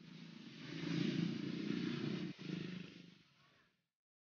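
A vehicle engine passing by: it swells in, is loudest about a second in, then fades away before the end, with a brief dropout a little after two seconds.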